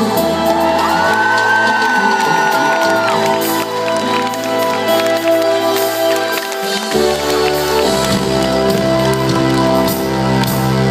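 Live pop band playing in a concert hall, with sustained keyboard chords; the bass and drums come back in strongly about seven seconds in. A high held voice wavers over the music in the first few seconds, and the crowd cheers.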